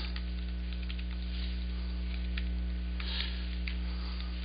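Steady electrical mains hum on the recording, with a few faint computer keyboard keystroke clicks scattered through it as code is typed.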